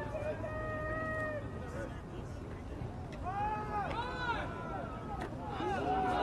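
Faint, distant voices of people shouting and calling out at a football game: one drawn-out call about half a second in, then a few short rising-and-falling shouts around the middle, over a low murmur.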